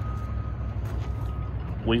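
Steady low rumble of an engine running somewhere in the equipment yard, with two faint high beeps in the first second and a half.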